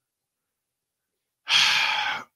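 Dead silence for about a second and a half, then a man's audible intake of breath, under a second long, taken before he speaks on.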